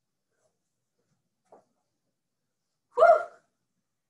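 Near silence, then about three seconds in a woman's single short, breathy "whew": a winded exhale of exertion as a set of leg lifts ends.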